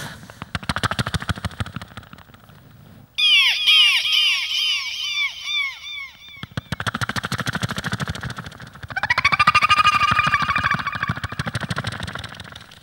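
A mimicry artist making vocal sound effects close into a microphone. First comes a fast run of clicking putts, then a string of repeated rising-and-falling chirps about three a second. More rapid clicking follows, then a held whistle-like tone that rises as it starts.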